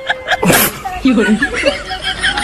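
A single short sneeze about half a second in, a sharp burst of breath with a falling voiced pitch, followed by brief voice sounds.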